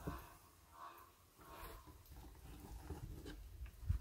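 Faint handling sounds of wet, cement-slurry-soaked rag strips being worked in a plastic tray and around a wrapped bottle, with a soft knock near the end.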